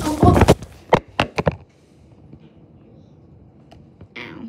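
Handling noise from the phone itself: rubbing against the microphone, then three or four sharp knocks about a second in. After that, quiet room tone.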